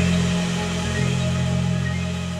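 Music ending: a held low chord with a few scattered high notes, beginning to fade about a second in.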